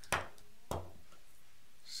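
Two light knocks about half a second apart, the first louder, as small vape box mods are handled and moved in the hands.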